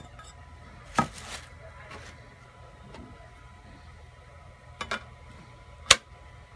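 Magnetic build plate and its spring-steel sheet being handled, knocking and clicking against each other. There is a clack about a second in, two quick clicks near five seconds, and a sharp snap just before the end, the loudest of them.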